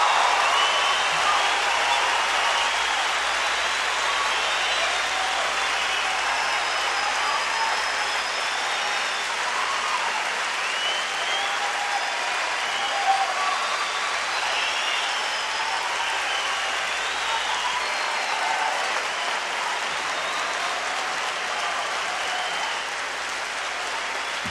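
Concert audience applauding and cheering at the end of a song, with scattered shouts and whistles over the clapping. The applause is loudest at the start and slowly eases off.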